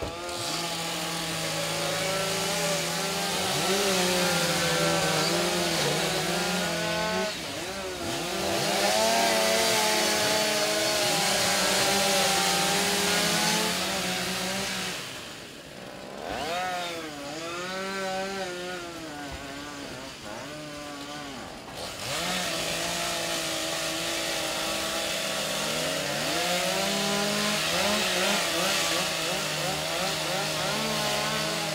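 Chainsaw cutting a roof ventilation opening over a burning house, over a steady hiss. The engine revs and dips in pitch again and again as the chain bites, and eases off briefly twice in the middle.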